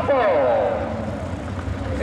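A man's voice drawing out a word and trailing off in the first second, over a steady low rumble of vehicle engines.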